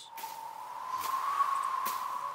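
A single steady high tone held for about two seconds, with two faint clicks, one about a second in and one near the end.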